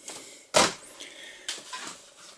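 A boxed die-cast model car in its cardboard-and-plastic window box being handled and set aside: one sharp knock about half a second in, then lighter rustling and a smaller click about a second and a half in.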